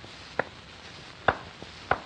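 Steady surface hiss of an old shellac 78 rpm record, with three sharp clicks about a second apart in a gap before the band comes in.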